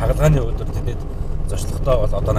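Steady low rumble of a vehicle driving, heard inside its cabin, under a man talking at the start and again near the end.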